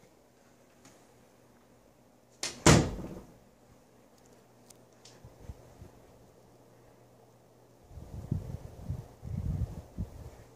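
Faint steady hum of a ceiling fan running on high, broken about two and a half seconds in by one loud, sharp knock, with low rumbling thumps of handling and movement near the end.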